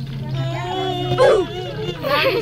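Girls' voices, with one vocal sound sliding sharply up and down in pitch about a second in, over a steady low hum.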